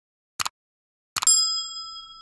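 Subscribe-button sound effects: a short mouse click, then about a second in another click followed by a ringing bell ding that fades slowly.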